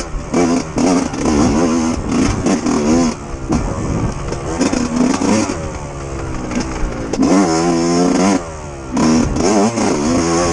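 Yamaha YZ125 two-stroke dirt bike engine on the trail, revving hard and easing off over and over, with clattering knocks from the bike over rough ground. Near the end it winds up in one long climbing rev, then the throttle shuts off briefly before it picks up again.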